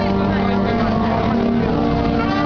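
Brass band playing a slow processional march in long held notes.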